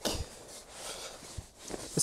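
Cloth rubbing and rustling against a walleye bumper board (fish measuring board) as it is wiped down, loudest at the start, with one light knock about one and a half seconds in.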